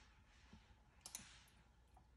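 Near silence broken by a few faint clicks, two close together about a second in, from a laptop being clicked to advance a page of an on-screen catalog.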